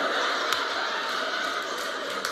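Audience laughing and clapping after a comic punchline, a steady mass of crowd noise with scattered sharp claps.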